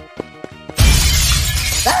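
Cartoon sound effect of glass shattering: a sudden loud crash with a heavy low thud about a second in, the breaking glass lasting to the end, over background music with a steady beat. A short cry of pain starts right at the end.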